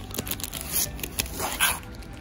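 Clear plastic packaging on a fabric storage box crinkling and rustling close to the microphone as it is handled, in a quick run of crackles that is loudest near the end.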